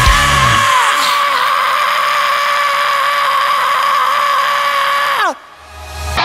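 The end of a melodic power/thrash metal song: after the drums and bass stop, one high note is held with vibrato for about five seconds, then dives in pitch and cuts off near the end. A short low rumble follows.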